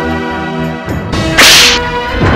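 Dramatic background score with sustained tones, cut through about one and a half seconds in by a loud, short swish sound effect, the loudest thing here.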